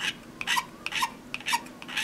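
An X-Acto No. 10 blade scraping (adzing) the moulded parting-line ridge off a clear plastic aircraft canopy, in a series of short, quick strokes several a second.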